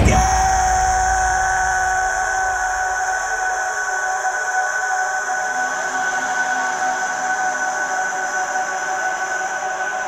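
Closing drone of a heavy crust-punk/metal song: after the band stops, a few high, steady ringing tones are held, easing slightly at first and then sustained.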